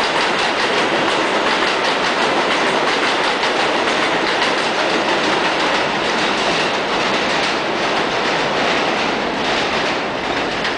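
R160A New York City subway train running out of an elevated station: steady rumble of wheels and traction motors with a rapid clickety-clack over the rail joints, easing slightly as it pulls away near the end.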